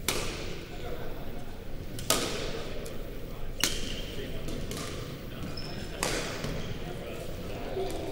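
Badminton rackets striking a shuttlecock in a singles rally: four sharp hits about two seconds apart, each echoing briefly in the large gym hall.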